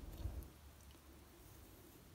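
Near silence, with a few faint soft handling sounds in the first half second as the crocheted yarn fabric is moved by hand.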